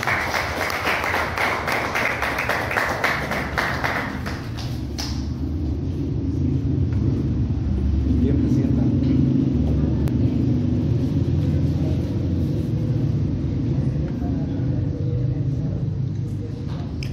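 Audience applauding for about the first five seconds, then a steady low rumble for the rest.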